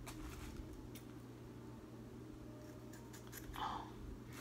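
Faint rustling of fingers working through curly synthetic wig hair, with a few soft ticks, over a low steady hum.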